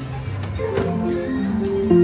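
Music: a melody of short held notes stepping up and down in pitch.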